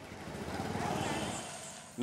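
A vehicle engine passes on a street: a low, pulsing engine sound with road noise, swelling to a peak about halfway through and fading.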